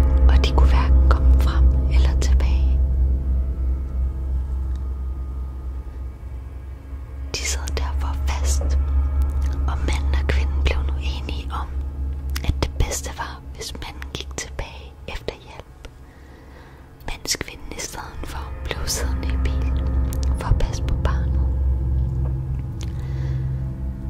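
A voice whispering in short phrases over a low, steady droning music bed. The whispering pauses for a few seconds past the middle, then comes back.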